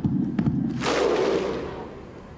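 Voices letting out a loud yelling roar like a battle cry: it starts suddenly, peaks about a second in and then dies away.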